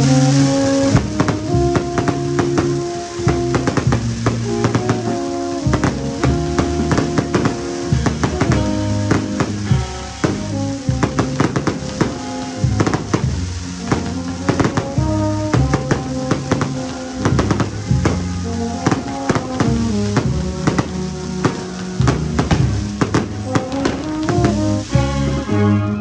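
Peruvian brass band (banda orquesta) playing a processional march: tuba and other brass hold sustained chords that change in steps, over a steady beat of cymbal and drum strokes.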